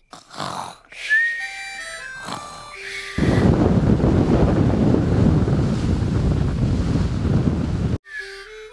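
Cartoon children's pretend snoring, soft breathy snores with a few short tones. About three seconds in, a sudden loud, dense, distorted noise takes over.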